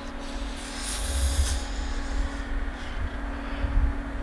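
Wind buffeting the microphone outdoors, an uneven low rumble with a steady faint hum under it and a brief hiss about a second in.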